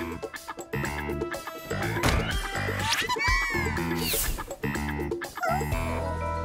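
Cartoon background music with short, squeaky chirping sounds over it, rising and falling quickly in pitch.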